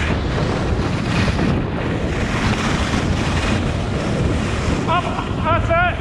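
Wind rushing over an action-camera microphone on a skier moving fast down a groomed piste: a steady, loud buffeting. About a second before the end come a few short, wavering high-pitched vocal calls.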